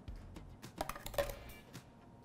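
Light taps and clinks of a metal measuring spoon against a stainless steel phin filter and a plastic catch cup as ground coffee is scooped in, two brighter clinks about a second in, over soft background music.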